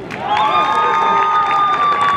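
Soccer spectators cheering and shouting after a goal, the noise jumping up just after the start, with one long high-pitched cry held over the crowd from about half a second in.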